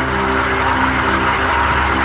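Background music of steady held notes under an even hiss of background noise.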